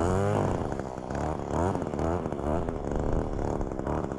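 String trimmer's small engine running and revving up and down repeatedly as it clips the tops off weeds.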